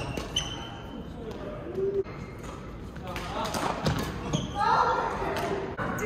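Doubles badminton rally: sharp clicks of rackets hitting the shuttlecock and footfalls on the court, with short shoe squeaks, echoing in a large sports hall.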